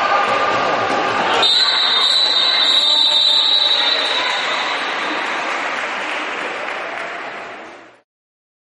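Ambient sound of an indoor futsal match in an echoing sports hall: a general wash of players' and spectators' voices and play. About a second and a half in, a steady high tone starts and holds for about two and a half seconds, and the whole sound fades out at the end.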